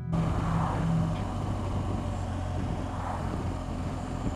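On-bike camera sound from a 2014 BMW R1200GS riding at road speed: the boxer-twin engine running steadily under a constant rush of wind noise.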